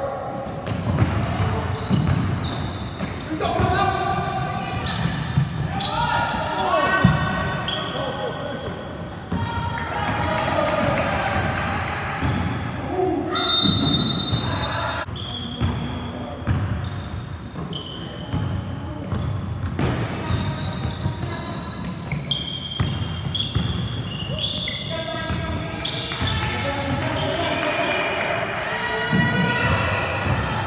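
A basketball dribbled on a hardwood court in a large, echoing gym, with players' voices calling out during live play and a few brief high squeaks.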